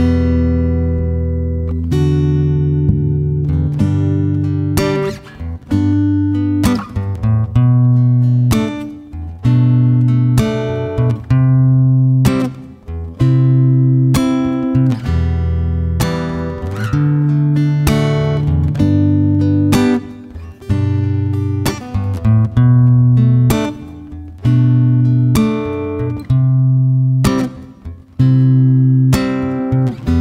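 Solo acoustic guitar strumming chords, with a sharp strum every second or two and each chord left ringing: an instrumental karaoke backing track with no vocals.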